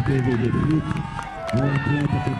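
A man's voice talking, not picked up clearly, with other voices higher in pitch mixed in behind it.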